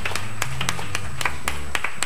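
Scattered sharp hand claps, roughly four a second and not quite even, over low sustained bass notes.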